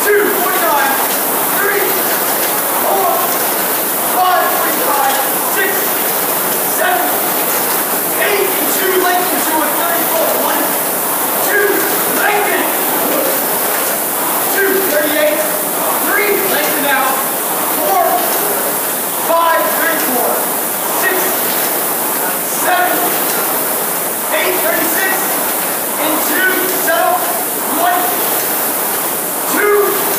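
A coxswain's voice calling out continuously to a rower during a 2K test, over the steady whir of an air-resistance rowing machine's flywheel.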